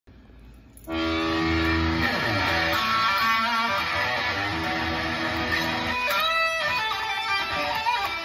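Jackson X Series Soloist electric guitar being played. It comes in about a second in with a held chord, slides down in pitch, plays more notes, then rings a bright high note about six seconds in before a run of quicker notes.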